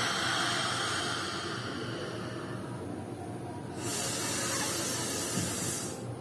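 A woman's slow, deep breathing during a pranayama breathing exercise: a long breath out through the open mouth for about three and a half seconds, then another long breath from about four seconds in that stops just before the end.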